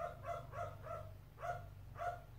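A small dog yapping, four quick high barks in a row and then one more about a second and a half in, fainter than the nearby speech.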